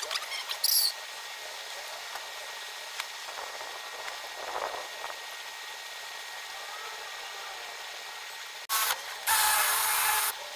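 Near the end a cordless drill starts with a short burst, then runs steadily as it drills into a wooden tool handle. Before that there is only a low background with a few light clicks near the start.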